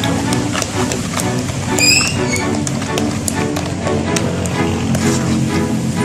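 Background music with a steady beat, with a short rising whistle-like sweep about two seconds in.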